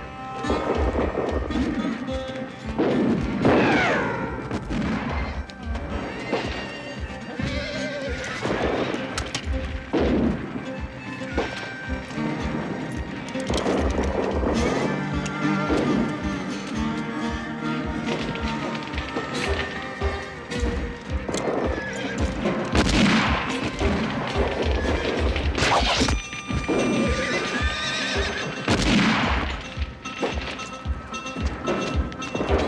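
Horses whinnying several times over film score music, with a dense low thumping beneath.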